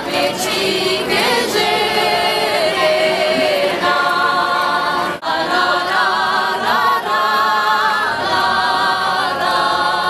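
Four women singing a cappella in close harmony, several voices sounding together.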